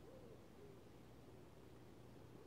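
Faint, low hooting bird calls, two short rising-and-falling notes near the start, over a quiet outdoor hush.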